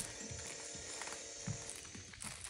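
A faint, steady recorded sound played at low volume from a puppy sound-desensitization app, with a few soft knocks from puppies moving about.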